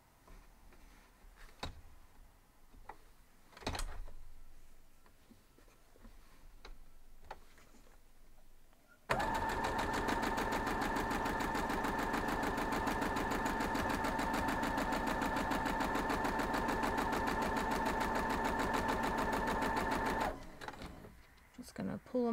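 Domestic electric sewing machine stitching a seam at a steady speed for about eleven seconds, its motor whine and rapid needle strokes running evenly, then stopping abruptly. Before it starts, a few soft knocks of fabric being handled and positioned.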